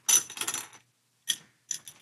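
Metal neck plate and loose neck bolts from a Jazzmaster clinking and rattling as they are handled and lifted off the guitar body. A burst of rattling comes first, then a few separate light clicks near the end.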